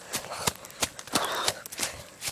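Footsteps through dry leaf litter and twigs, an irregular run of crackles and snaps.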